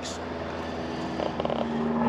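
A steady low mechanical hum with a few faint ticks about a second and a half in.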